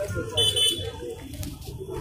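Voices of a busy street market, with a short high-pitched electronic beep about half a second in.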